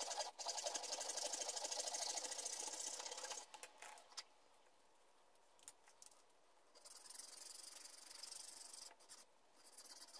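Small bow-frame hand saw cutting through thin wood with quick back-and-forth strokes. The sawing goes for about three seconds, stops, and starts again for about two seconds near the end.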